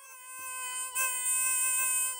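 Music from a reedy wind instrument holding one long steady note, growing louder about a second in.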